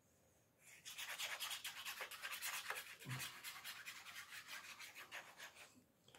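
Stiff paper card being rubbed or worked by hand in quick, scratchy, rhythmic strokes, about seven a second. The strokes start about a second in and stop just before the end, with a soft thump about three seconds in.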